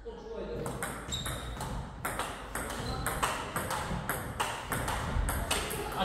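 Table-tennis rally: a serve followed by a quick back-and-forth of ping-pong ball hits, the ball clicking off the rackets and bouncing on the table more than a dozen times, every few tenths of a second.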